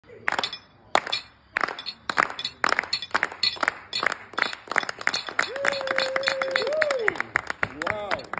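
A small group clapping hands, the claps scattered at first, then quicker and denser. Midway a voice holds one long called note that lifts and falls away at the end.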